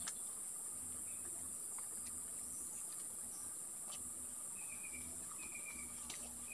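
Steady, high-pitched insect drone from crickets or cicadas, with a few faint knocks of bamboo firewood being handled.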